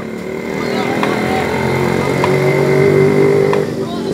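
A motor vehicle engine running steadily, growing louder and then dropping away about three and a half seconds in.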